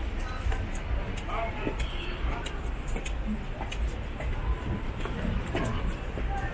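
Busy city street ambience: a steady low rumble of road traffic with snatches of passers-by talking and a few sharp clicks.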